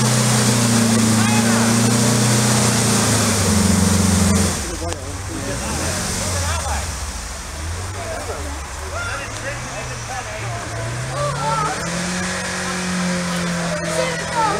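A VW Beetle-based buggy's engine revving hard and steady as it climbs a steep muddy slope. About four seconds in, the revs drop sharply and run unevenly lower, then pick up again and hold near the end. Spectators' voices are heard under it.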